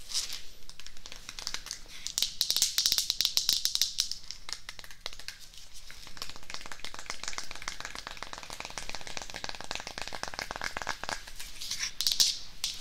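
Close-up crinkling and crackling as the branches of a small black decorative tree are handled and rubbed close to the microphone, busiest a couple of seconds in and then lighter and steady.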